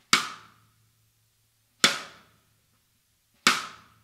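Sonor Phonic D506 14x6.5" ferro-manganese steel snare drum struck with a stick, three single hits about a second and a half apart. Each hit rings out briefly and dies away within about half a second.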